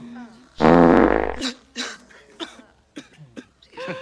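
A loud, low buzzing fart sound lasting just under a second, starting about half a second in, as a carving knife cuts into a dried-out roast turkey and the bird deflates.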